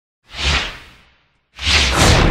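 Two whoosh sound effects from an animated intro. The first swells and fades out within the first second, and the second starts just after halfway and is still going at the end, each with a low rumble underneath.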